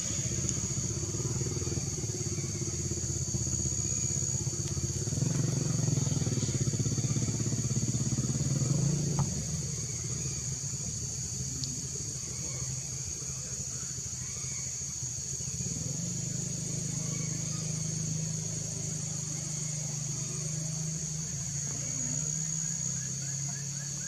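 A steady low engine drone that swells a little from about five to nine seconds in, over a constant high buzz of insects.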